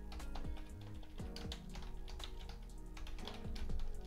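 Computer keyboard typing: an irregular run of quick key clicks over soft background music.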